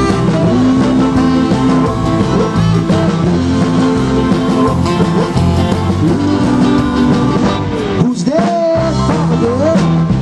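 Live rock and roll band playing: electric guitars, bass and drums with a steady beat. About eight seconds in the bass and drums drop out for a moment, and singing comes in near the end.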